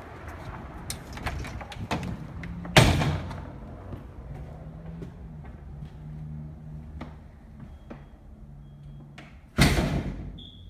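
A door shuts with a loud bang about three seconds in, and a second loud bang comes near the end, with lighter clicks and knocks between them. A faint low hum sits under the middle of the stretch.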